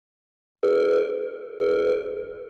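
A pitched electronic beep sounds twice, about a second apart. Each note starts sharply and then fades.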